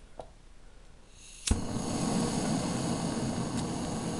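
Hand-held gas torch on a canister being lit: a short hiss of gas, a sharp click about one and a half seconds in as it ignites, then the flame burning with a steady hiss.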